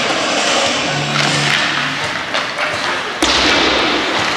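Ice hockey rink sound during play: music and voices echo through the arena, and a sudden loud thud comes about three seconds in.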